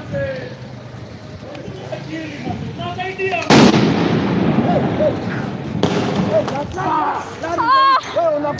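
A single loud bang about three and a half seconds in, a tear gas canister going off in the street, with a weaker bang near six seconds. People's voices call out around it.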